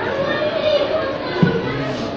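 Indistinct chatter of many people, children's voices among them, echoing in a large hall, with a short thump about a second and a half in.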